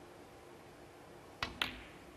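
Snooker shot: the cue tip strikes the cue ball, and about a fifth of a second later the cue ball clicks against an object ball, the second click ringing briefly.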